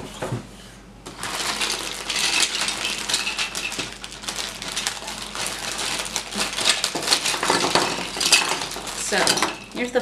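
Plastic toy blocks and figures clattering and rattling as a plastic bag of them is opened and tipped out onto a table, with the bag crinkling. The clatter starts about a second in and keeps going almost to the end.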